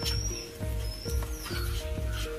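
Background music with a steady beat, held notes and repeated high chirp-like glides.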